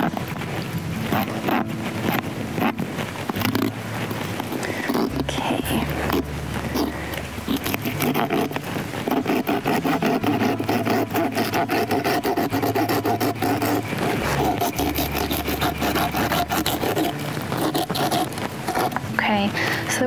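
Hand bone saw cutting through a pronghorn's rib cage, repeated rasping strokes on bone. A steady low hum runs underneath from about five seconds in until near the end.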